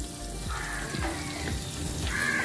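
Water sizzling and bubbling on the bottom of a hot, heavy black cooking pot.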